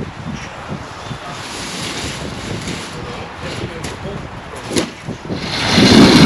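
Wind on the microphone with faint scrapes and knocks of a broom pushing water across a wet concrete slab. About five and a half seconds in, a much louder steady machine sound starts: a cement mixer running.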